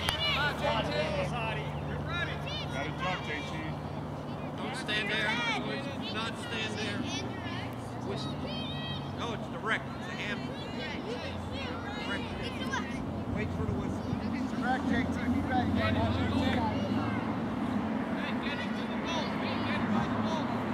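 Youth soccer game sideline: scattered shouts and calls from players and spectators across the field, with a steady low hum underneath that shifts in pitch a few times.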